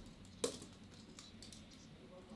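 One sharp click about half a second in from a marker pen being handled at a desk, followed by a few faint small ticks.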